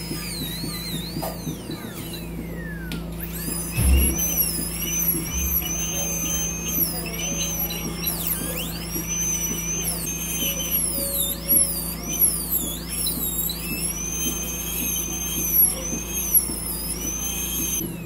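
High-pitched whine of a dental drill handpiece cutting into a cat's teeth and jawbone during a full-mouth extraction. The pitch repeatedly dips and recovers as the bur bites, over a steady low hum, with a dull thump about four seconds in.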